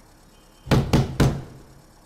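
Three quick knocks on a door, about a quarter second apart, near the middle.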